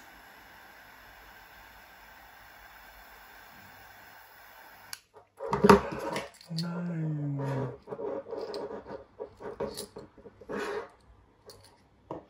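A small butane torch lighter clicks on and hisses steadily for about five seconds while the paracord ends are melted, then cuts off suddenly. A sharp knock follows, the loudest sound, then a brief low falling hum from a voice and light handling clicks and rubs.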